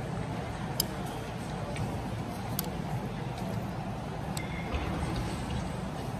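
Busy breakfast room: steady background hum and murmur, with a few sharp clinks of a metal spoon against a ceramic bowl or dishes, one of them ringing briefly about four and a half seconds in.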